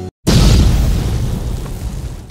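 A deep boom sound effect for a title card: a sudden loud hit about a quarter second in, after a moment of silence, fading away over the next two seconds.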